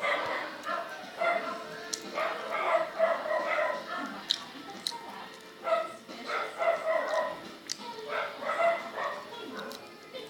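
A small dog yapping repeatedly in short, irregular bursts.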